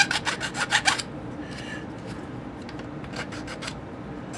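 Hand file scraping a 3D-printed ABS plastic part in quick short strokes, about seven a second, to run down high spots on the print. The strokes stop about a second in and resume more faintly after about three seconds.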